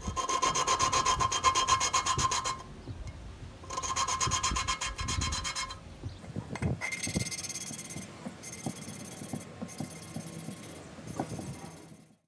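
An engine valve being lapped by hand into its seat in a Series 2A Land Rover cylinder head, a lapping stick twisted rapidly back and forth so the worn valve grinds against the seat: a gritty rubbing rasp in two long spells of fast strokes, then lighter, more broken rubbing in the second half.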